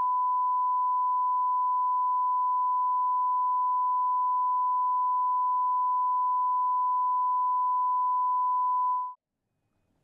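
A censor bleep: a single steady 1 kHz tone that replaces speech, masking the offensive words being quoted. It cuts off abruptly about nine seconds in, followed by about a second of silence.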